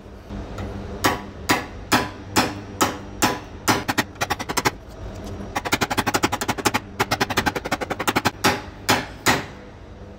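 Metal body-repair tool tapping the sheet metal of a car's front fender at the wheel-arch lip, knocking down a high spot. Spaced sharp taps about two a second, then a fast run of light taps about six a second for nearly three seconds, then a few more spaced taps.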